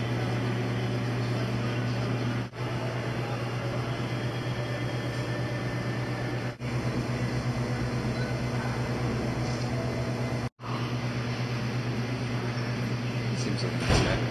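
Steady low electrical or ventilation hum with a hiss over it, the room tone of a large indoor test hall, dropping out briefly three times.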